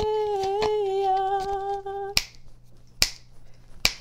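A woman's voice holds one long, steady note until about halfway, with sharp snaps over it. After that come three single loud snaps, a little under a second apart.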